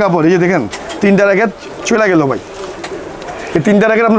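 A man talking in short phrases with pauses between them.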